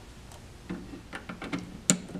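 Light handling noise from a handheld cable tester and its RJ45 patch cable: a few soft taps and rustles, then one sharp plastic click just before the end.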